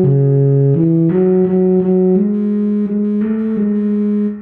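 Euphonium playing a melody line from sheet music: a connected run of held notes in its middle range, stepping up and down in pitch several times.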